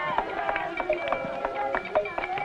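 A drum ensemble playing sharp strokes about four to five a second, with voices singing or chanting over it; the sound starts abruptly.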